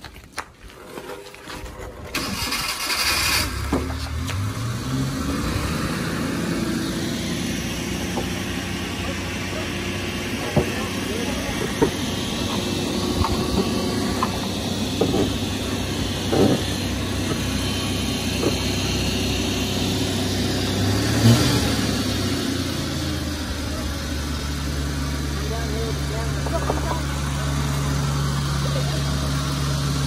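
Small mini truck's engine cranked and started about two seconds in, its note rising as it catches, then running steadily; the note shifts a little past twenty seconds in.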